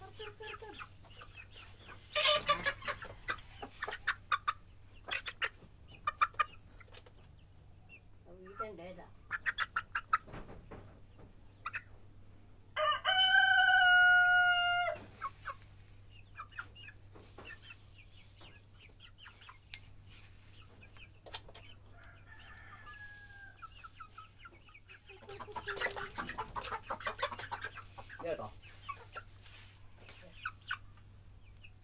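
Rhode Island Red chickens clucking and squawking in short bursts while one is caught and held. About halfway through, a rooster crows once, a steady call lasting about two seconds and louder than anything else.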